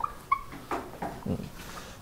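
Whiteboard eraser squeaking against the board: two short, high squeaks in quick succession, followed by faint rubbing and light taps.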